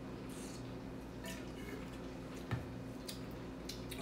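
Faint handling sounds over a steady low room hum, with one soft knock about two and a half seconds in as a stainless steel spit cup is set back down on the table.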